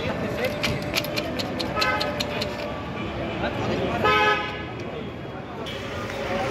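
A vehicle horn honks briefly about four seconds in, the loudest sound, after a fainter short toot near two seconds, over street traffic and the chatter of people.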